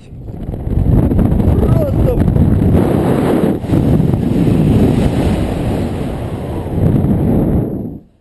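Loud wind buffeting the microphone of a rope jumper's point-of-view camera as he swings through the air on the rope after the jump. The rush builds in the first second and stops abruptly near the end.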